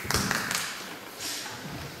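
A few knocks and thumps, the loudest at the very start with a low thud, fading out over the first second.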